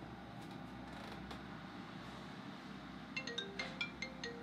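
Faint room tone, then about three seconds in an iPhone starts ringing with an incoming call: a ringtone melody of short, bright, stepping notes.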